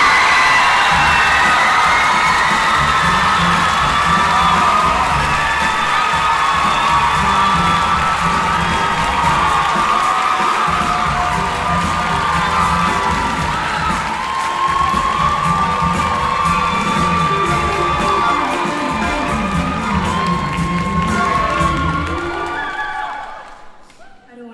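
A large, young audience cheering loudly with many high shouts, and music playing underneath; the cheering dies down near the end.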